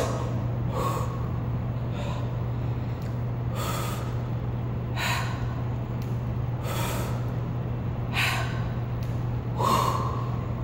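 A woman breathing hard with short, forceful breaths about every second and a half, in time with her reps under a barbell. A steady low hum runs underneath.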